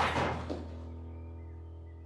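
Dramatic background score holding a low sustained note, getting quieter. A short sudden noisy sound at the very start fades within about half a second.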